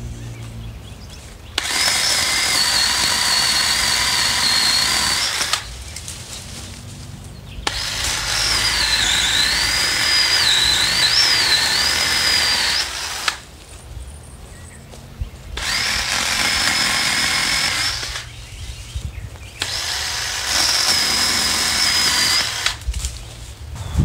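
Black & Decker 18V cordless pole saw, running on a replacement 18650 lithium-ion pack, cutting overhead tree branches in four runs of a few seconds each with quieter gaps between. Its high motor-and-chain whine holds steady in most runs, but dips and wavers through the second, longest run as the chain bites into the wood.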